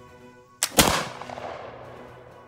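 Shortened reproduction 1763 Charleville flintlock musket firing a black-powder round: a lighter crack, typical of the flintlock's pan igniting, followed a split second later by the loud report of the main charge, which rings off over about a second.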